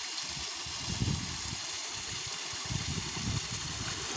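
Water sloshing and splashing in a small, shallow pond as a swimmer ducks in and starts to swim, with surges about a second in and around three seconds. Beneath it runs a steady rush of water.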